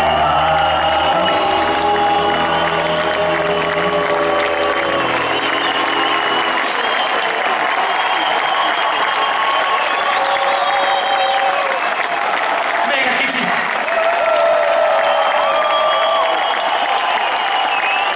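A rock and roll band's final held chord rings out for the first five seconds or so and dies away, under and then giving way to a large audience applauding and cheering.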